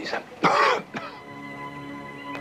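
A man's short, harsh gasp about half a second in, the loudest sound here, followed by a sustained chord of film-score music that comes in about a second in and holds steady.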